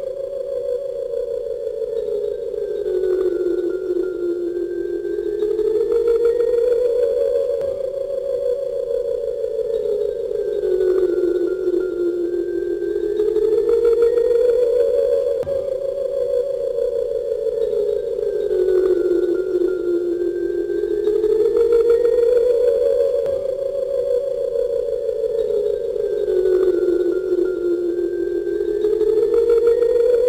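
Soundtrack music: a sustained, theremin-like electronic tone that slowly slides down in pitch and back up again, repeating about every seven or eight seconds.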